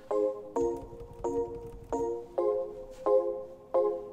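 Ableton Live's Glass Piano instrument playing a repeating chord loop on its own. A bell-like chord is struck about every two-thirds of a second, each one ringing briefly and fading before the next.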